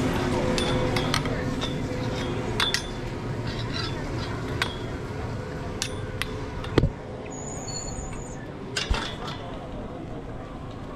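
Skis sliding over packed snow, with scattered sharp clicks and clinks of ski poles and gear and a louder knock about seven seconds in.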